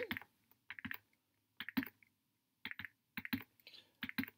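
Pen stylus tapping on a drawing tablet in small quick clusters of a few taps, about once a second, as dots are drawn.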